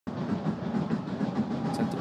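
Stadium crowd noise at a football match: a steady, dense din of many voices.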